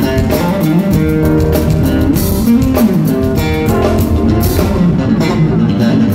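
Live jazz-funk band: an electric bass plays a melodic line with pitch slides over a drum kit and keyboards.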